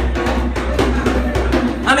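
Djembe hand drum struck with bare hands, keeping a steady rhythm of strokes.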